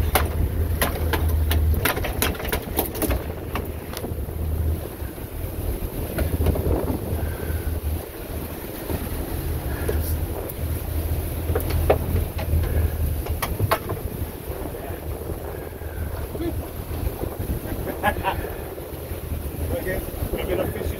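Wind buffeting the microphone on the open deck of a sportfishing boat, in uneven gusts over the boat's running noise and the sea, with scattered sharp clicks and knocks.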